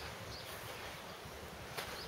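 Quiet rural outdoor ambience: a faint steady hiss, with a faint bird chirp about half a second in and a light click near the end.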